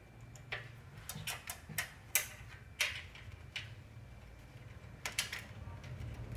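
Fluorescent backlight lamps and their end holders in an LCD TV handled by hand, giving about ten sharp, irregular clicks and light knocks, most of them in the first three seconds and a pair just after five seconds. A low steady hum runs underneath.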